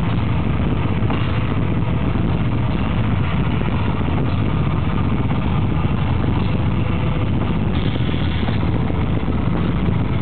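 Black metal band playing live, loud and unbroken: a dense wall of distorted electric guitars and drums.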